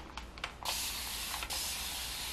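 Spray bottle misting water onto hair: a steady hiss that starts under a second in and lasts nearly two seconds, with a brief break in the middle.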